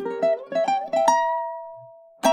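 Kanile'a ukulele picked note by note through a diminished chord shape: a quick run of plucked notes, then one note left ringing and slowly fading.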